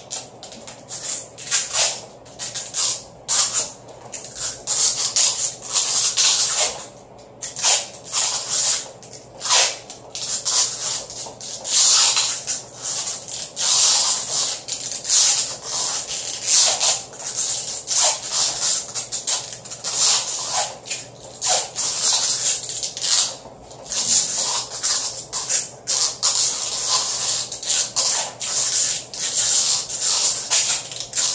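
Adhesive tape being pulled off the roll in repeated short, hissy rips at an uneven pace as it is wound around a PVC pipe, with rubbing and handling noise in between.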